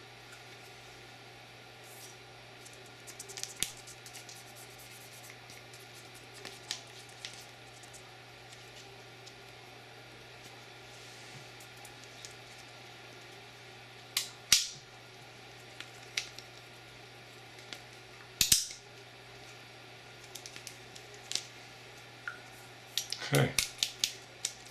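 Sparse light clicks and taps of steel pistol parts being handled and wiped by hand, with a few sharper metallic clicks about 14 and 18 seconds in, over a steady low hum.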